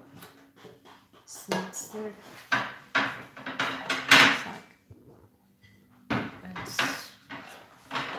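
Plates and kitchenware being handled and knocked together: a run of clatters and clanks, loudest about four seconds in, then a short pause and a few more about six seconds in.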